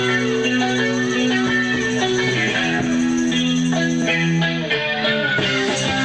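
Live rock band playing an instrumental passage: electric guitar notes ringing over a bass line, with drum hits joining about five seconds in.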